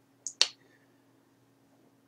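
Two sharp clicks a little over a tenth of a second apart, made while working a computer, followed by a faint steady low hum.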